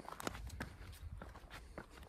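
Footsteps on bare rock: faint, irregular scuffs and crunches of shoes on gritty stone, several a second.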